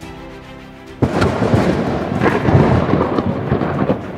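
Theme music with a thunder sound effect: soft music, then about a second in a sudden loud burst of thunder that lasts about three seconds.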